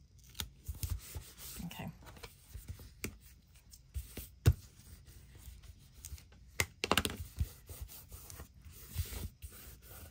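Handling noise of a handmade paper notebook: scattered light taps, rubs and paper rustles, with a few sharper clicks, the loudest about four and a half seconds in and around seven seconds in.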